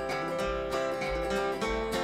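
Old-time string band playing an instrumental passage: plucked acoustic strings keep a steady, even beat over regular bass notes.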